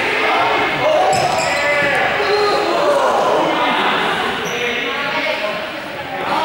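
Several young people's voices calling out and chattering over one another, echoing in a large sports hall, with a ball bouncing on the gym floor.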